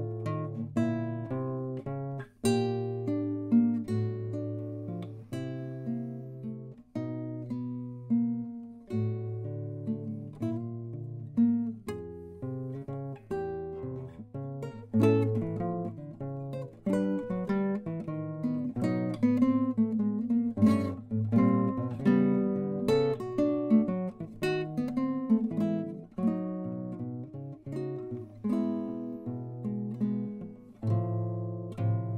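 Solo classical guitar with nylon strings, fingerpicked: a fugue, with several lines of plucked notes sounding together at a steady pace.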